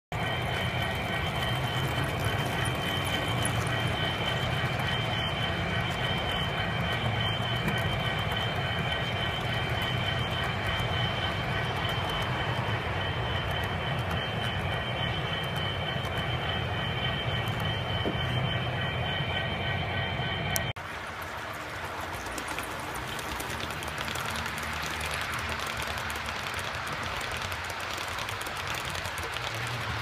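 HO scale model freight cars rolling past on sectional track: a steady rumble of metal wheels on rail with a thin high whine over it. The sound drops and changes abruptly about two-thirds through, then rolls on more evenly.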